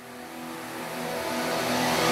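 Intro of an electronic dance track: a held synth chord under a rising noise sweep that swells steadily louder, building toward the beat.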